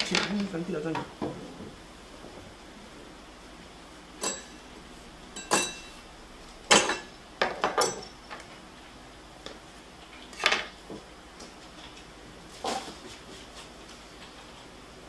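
Kitchen utensils, metal bowls and cutlery being handled and put away as the worktop is cleared. About six separate clinks and knocks come a second or two apart, some with a short metallic ring.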